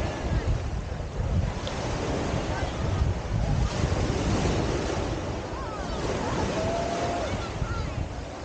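Small waves breaking and washing up the sand at the shoreline, with wind buffeting the microphone.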